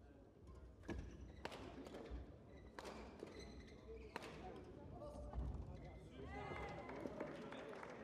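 Faint sports-hall ambience: a murmur of background voices broken by a few sharp knocks and smacks. From about six seconds in there are wavering high squeaks and calls.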